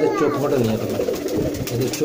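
Pigeons cooing, several overlapping low coos.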